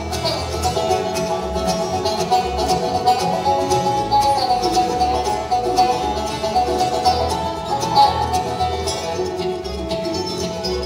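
Live bluegrass band playing an instrumental tune at a steady tempo: banjo, fiddle, acoustic guitar, mandolin and upright bass together.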